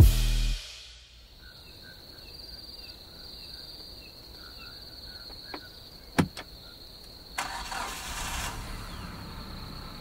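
A pickup truck's engine starting about seven and a half seconds in and then running at idle, after a single sharp click of its door about six seconds in. Underneath, night insects keep up a steady high drone with faint chirps, and the tail of a music track fades out at the very start.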